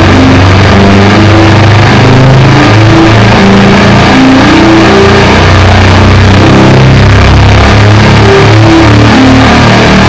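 Electric guitar under extreme distortion, playing a run of low sustained notes that step from pitch to pitch over a dense, buzzing wall of noise, very loud throughout.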